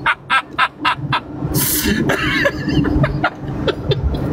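A person's voice making a quick run of short, staccato sounds, with a brief hiss about a second and a half in.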